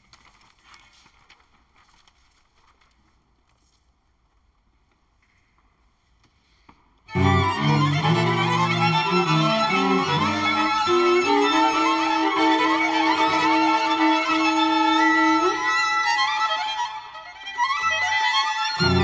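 String quartet (two violins, viola and cello): near silence for the first seven seconds, then all four enter suddenly and loudly with sustained, shifting chords over a strong low cello line, easing briefly near the end.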